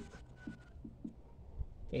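Marker writing on a whiteboard: a few faint, short strokes as the last letters of a word are written.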